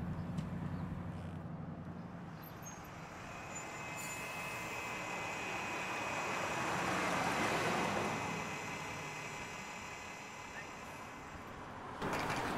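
City transit bus running low and steady, then a swell of engine and road noise with a steady high whine as it pulls past, loudest about seven to eight seconds in, then fading.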